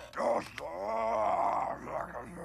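A gruff, groaning alien voice answering in non-human gibberish syllables: an Aqualish character's vocalising, with a short break about half a second in.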